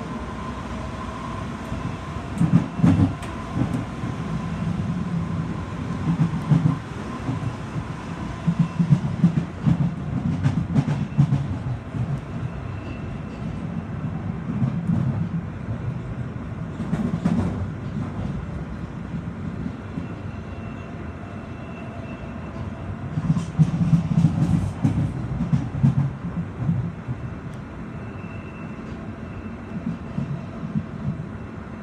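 Inside a London Underground Jubilee line 1996 Tube Stock train running at speed: a steady low rumble of wheels on rail, with louder surges of rattle and clatter every few seconds. A faint high whine fades out about a third of the way in.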